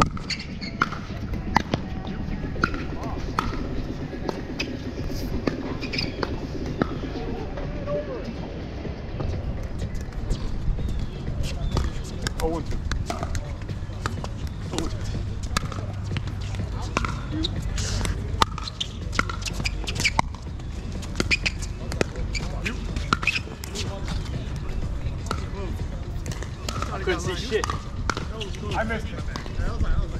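Pickleball rally: paddles striking a hard plastic ball in sharp pops at irregular intervals, with the ball bouncing on the hard court between hits, over a low steady rumble.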